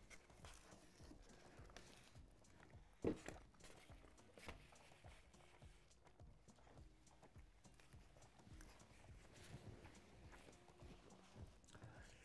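Near silence: room tone with a few faint, scattered clicks and taps.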